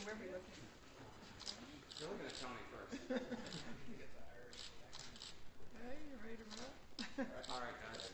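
Quiet, indistinct chatter of people talking at a distance from the microphone, several voices overlapping.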